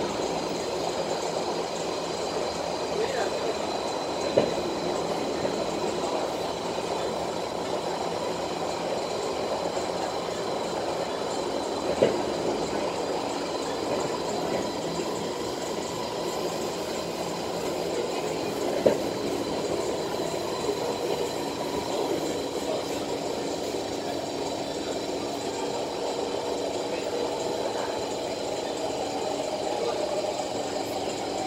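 Cabin noise inside a moving SMRT Kawasaki C151 metro train: a steady running rumble from wheels and track, with three sharp knocks spread through it.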